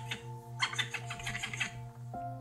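Calm ambient background music: sustained soft chords over a low tone pulsing about three times a second. A dry rustling, scratching noise runs through the middle of it, from about half a second in until near the end.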